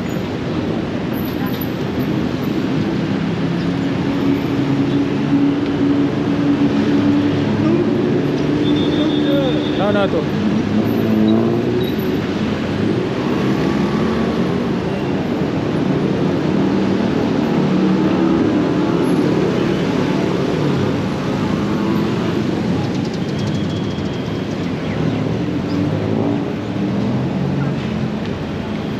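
Busy city street traffic: car and motorbike engines running in a steady mix, with passers-by talking.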